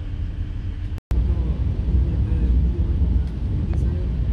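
Running noise of a moving train heard from inside the carriage: a steady low rumble. It breaks off for an instant about a second in and comes back slightly louder.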